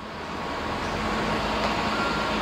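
Construction-site background noise: a steady rumble of engines and traffic, fading in.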